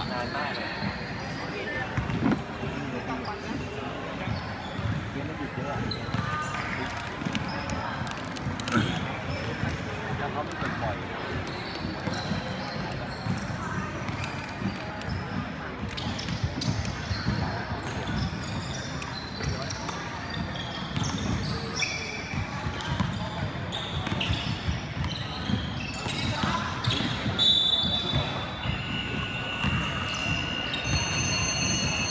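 A basketball bouncing on a wooden gym floor, with a steady murmur of voices from players and spectators, all echoing in a large indoor hall.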